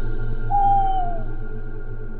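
Eerie ambient background music with steady droning tones, and one long hooting call about half a second in that holds its pitch and then falls away at the end.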